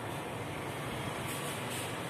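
Steady background noise with a low hum, even in level throughout.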